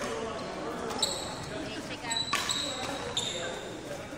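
Shoes squeaking on a wooden indoor court floor: three short, high squeaks, with a sharp hit about a second in. People are talking in the echoing sports hall.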